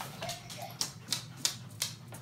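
Crinkling and sharp clicks from a plastic shopping bag and toy packaging being handled, a few irregular clicks a second.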